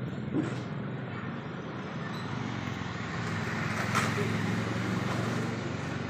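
Steady low hum of a running motor, with a brief voice about half a second in and a short knock about four seconds in.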